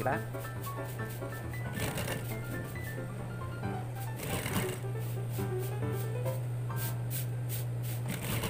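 Industrial sewing machine stitching piping onto a jersey neckline, with a steady low motor hum, under background music.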